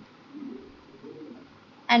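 Quiet room tone with a couple of faint, low, indistinct sounds, then a voice starts speaking near the end.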